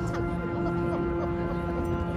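A steady held musical note with fainter higher tones above it, sustained without change, over chatter from the crowd.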